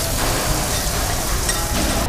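Ground beef frying on a hot flat-top griddle, sizzling steadily as a metal spatula works it.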